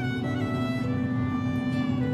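Background music with long held notes over a steady low tone.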